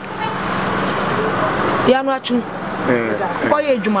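A road vehicle passing close by: a rushing traffic noise that grows louder over the first two seconds and then gives way to voices.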